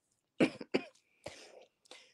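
A person coughing, three or four short coughs in quick succession with some throat clearing.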